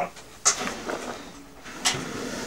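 Rustling and scuffing handling noise as a person bends down under a desk to fetch a computer mouse that has slipped out of reach. There is a sharp scrape about half a second in and another near the end, with softer rustling between.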